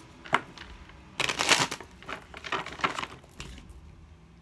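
A deck of tarot cards being shuffled by hand: a sharp click about a third of a second in, a dense burst of card rustling around a second and a half, then a few shorter card snaps.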